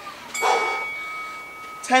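Workout interval timer chime: one bell-like tone sounding about a third of a second in and fading over about a second and a half, marking the end of the exercise interval.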